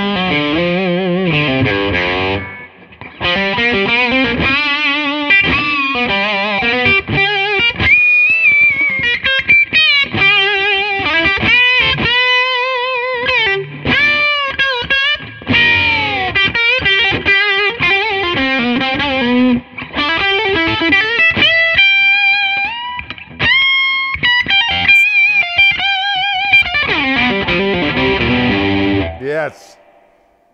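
Gibson Memphis 1963 ES-335 semi-hollow electric guitar on its bridge pickup, played through an amplifier: continuous single-note lead lines with wide string bends and vibrato, a few short pauses, stopping about a second before the end.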